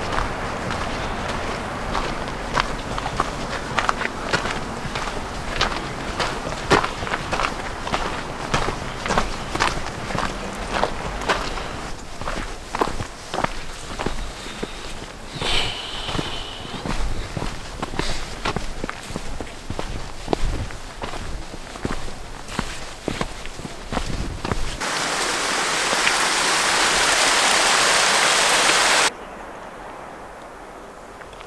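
Footsteps of hikers walking on a dirt and gravel trail, a run of irregular scuffs and crunches. Near the end a loud steady rushing hiss takes over for about four seconds, then cuts off suddenly.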